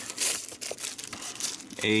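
Thin plastic packaging bag crinkling as it is pulled from a bag pocket and handled, loudest in the first half second, then in smaller scattered crinkles.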